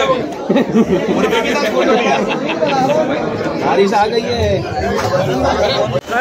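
Several people talking over one another: a man's voice amid overlapping chatter from others nearby.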